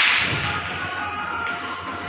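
A sharp clack of pool balls striking at the very start, ringing away over about half a second.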